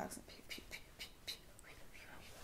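Faint whispering: a string of soft hisses and ticks, a few a second, with no voice behind them.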